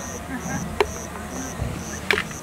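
An insect chirping steadily in short high-pitched pulses, about two a second. A single sharp click sounds just under a second in.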